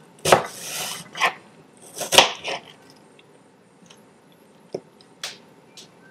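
Kitchen knife slicing through an apple and knocking on a cutting board: a few sharp knocks, the loudest about a third of a second in and just after two seconds, then a quiet stretch and two lighter knocks near the end.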